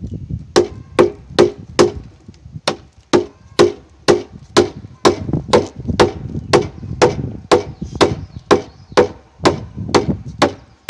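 A wooden mallet striking a framing chisel, chopping joinery into a hewn timber beam, in a steady rhythm of about two blows a second, each a sharp wooden knock.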